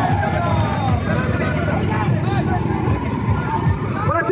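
Crowd voices talking and calling out over the running engines of motorcycles and cars in a slow, packed street procession.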